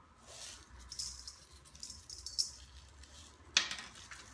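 Coarse pink Himalayan salt rattling in a plastic jar as it is shaken out into a measuring spoon, in a few short bursts. A single sharp knock about three and a half seconds in.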